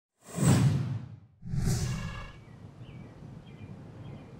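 Two loud whooshes about a second apart, each swelling quickly and fading away, followed by a faint steady outdoor background with a few faint high chirps.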